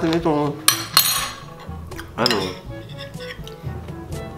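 Metal spoon clinking against a dish, with two sharp ringing clinks close together about a second in.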